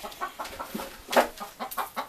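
Chickens clucking in a run of short, quick calls, with one louder drawn-out call a little past halfway.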